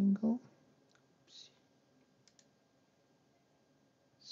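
A brief voiced murmur at the very start, then a few faint, sharp computer mouse clicks: one about a second in and a quick double click a little past halfway. Between them is quiet room tone.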